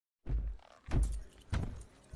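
Heavy footsteps of a large uniformed officer walking: three slow, evenly paced steps starting a moment in. Each step is a deep thud with a metallic jangle, like keys or gear on a duty belt.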